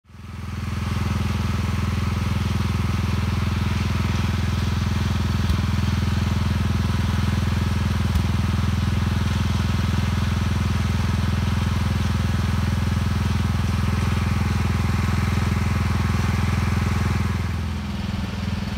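A boom lift's engine running steadily at constant speed, with two brief clicks partway through.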